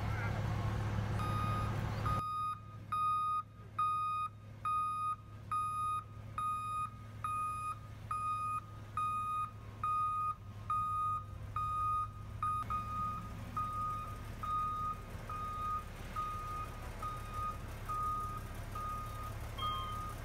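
Terex TR60 rigid dump truck's reversing alarm beeping regularly, a little over once a second, over the steady low running of its diesel engine. The beeps start about two seconds in and grow quieter in the second half.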